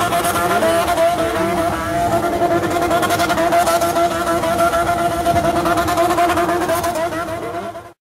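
An engine held at high, steady revs, a constant high-pitched drone that fades out just before the end.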